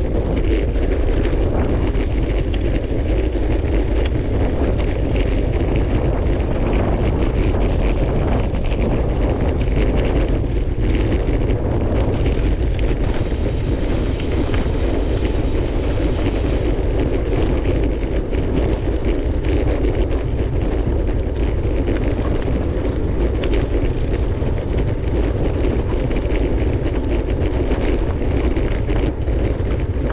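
Gravel bike rolling along a dirt and gravel track: a steady, loud rumble of wind buffeting the microphone mixed with the tyres crunching over gravel.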